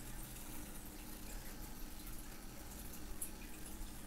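Faint pencil strokes scratching on paper, with a few small ticks, over a low steady hum.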